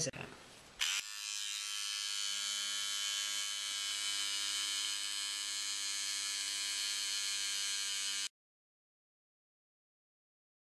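Quick Ripper, an AA-battery-powered electric seam ripper, running with a steady electric-shaver-like buzz as its blade cuts through the stitches of a seam. It starts about a second in and cuts off suddenly near the end.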